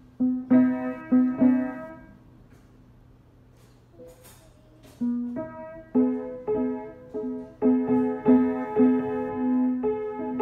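Upright acoustic piano played by a child: a simple tune of single notes, with one note struck again and again under a few higher ones. The playing stops for about three seconds, then picks up again and carries on more steadily.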